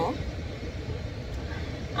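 Low, steady rumble of an idling car, heard from inside the cabin.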